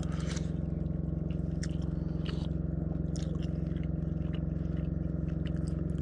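Eating at a table: a spoon clinking and scraping in a soup bowl and chewing, heard as scattered short clicks over a steady low hum.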